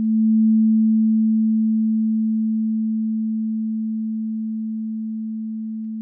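A held note from the ES2 software synthesizer: one steady, pure low tone that swells in over about half a second, then fades slowly and evenly as its volume envelope decays toward a low sustain level.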